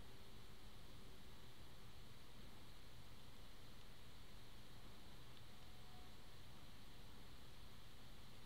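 Faint, steady room tone: a low hiss with a slight hum from the recording microphone, with no clicks or other events.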